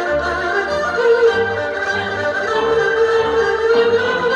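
Two erhus, Chinese two-string bowed fiddles, playing a melody in duet, with a long held note in the second half. A low bass line accompanies them.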